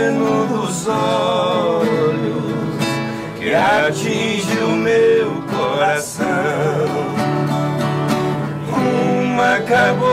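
Male voices singing a slow Brazilian caipira (sertanejo raiz) song in harmony, with vibrato on held notes, over two strummed acoustic guitars.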